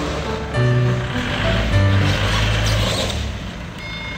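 Background music: held bass notes changing every half second or so under a melody, with a brief hiss-like swell in the middle.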